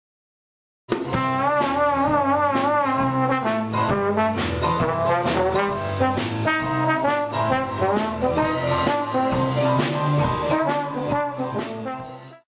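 Jazz with a brass lead playing a melody with vibrato over drums and bass, starting suddenly about a second in and cut off abruptly at the end.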